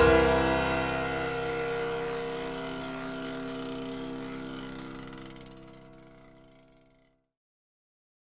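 Closing chord of a blues song on piano and guitar, struck once and left to ring with a high noisy shimmer above it, fading away to silence about seven seconds in.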